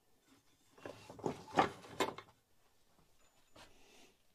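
Handling noise of a chainsaw crankcase and its parts on a workbench: about a second and a half of scraping and rattling, with a few sharp clicks, the last about two seconds in.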